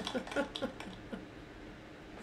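A man chuckling quietly: a few short soft pulses in the first second, trailing off.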